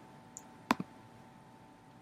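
Computer mouse clicking: a quick double click a little under a second in, preceded by a faint tick, against a quiet background.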